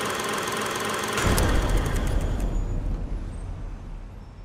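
Golf cart running with a steady buzzing noise. About a second in, a loud deep rumble comes in and then slowly fades away, as of the cart driving off.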